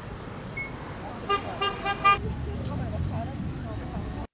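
A car horn sounding four short toots in quick succession about a second in, over the rumble of street traffic and faint voices.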